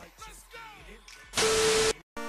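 Faint background sound, then in the second half a loud burst of static-like hiss with a steady mid-pitched tone, lasting about half a second and cutting off abruptly: a static-noise transition sound effect.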